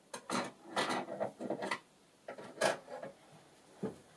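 Hands rummaging through craft supplies for a scrap of lace, heard as a run of irregular rustling and scraping rubs. A short low knock comes near the end.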